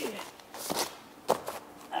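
Two light knocks about half a second apart amid soft scuffing, as cut asphalt shingle pieces are picked up and handled; a man says a word at the end.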